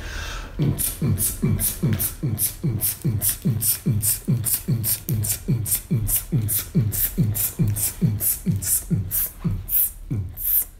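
A man beatboxing a steady techno beat with his mouth: a low kick that drops in pitch alternating with a hissing hi-hat sound, a little over two kicks a second.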